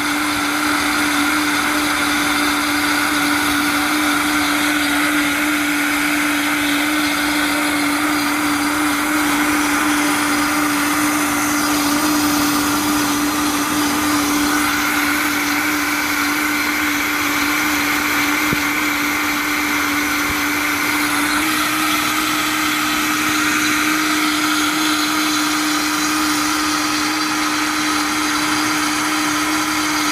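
Vitamix blender motor running steadily, blending a broccoli-and-cheese soup, with one steady pitched hum over an even whir. It is a long continuous run, the kind that heats the soup in the jar.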